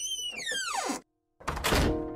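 Edited-in dramatic sound effects from the film's soundtrack: a swooping whoosh that rises and then falls in pitch and cuts off abruptly about a second in, then, after a brief silence, a second sharp hit.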